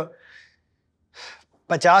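A man's voice trails off into a pause. About a second in he takes a short, quick breath, then starts speaking again near the end.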